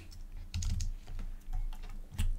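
Typing on a computer keyboard: several irregular keystrokes.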